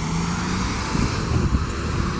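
Steady low rumble of road traffic, with a motor vehicle's engine hum in the first half-second.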